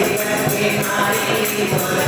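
A group of voices singing a Hindu devotional hymn (bhajan) together, over a quick, steady beat of jingling hand percussion.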